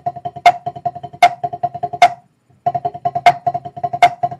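Drumsticks playing seven-stroke rolls on a practice pad: quick, even, ringing taps, about nine a second, with a louder accented stroke every three-quarters of a second. Two runs, with a short break a little past the middle.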